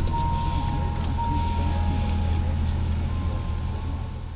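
Steady low rumble of a vehicle running, heard from inside the cabin, with faint voices underneath; it gets a little quieter near the end.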